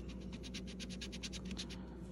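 A coin scratching the coating off a scratch-off lottery ticket: a faint, rapid run of back-and-forth strokes, about a dozen a second, that stops near the end.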